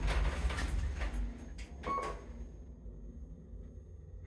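KONE MonoSpace DX lift car running down and slowing to a stop, a low steady hum that fades, with a few short clicks and a brief tone about two seconds in.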